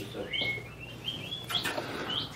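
Golden retriever whining: several quiet, short, high-pitched squeaky whines, some rising and falling in pitch.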